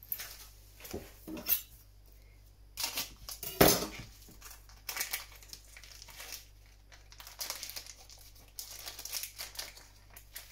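Plastic packet of feta being handled and opened, crinkling and rustling in irregular bursts, loudest about three and a half seconds in.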